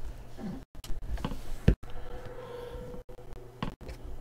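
Handling noise around an aluminium card case: a few light clicks and knocks, the sharpest about a second and a half in.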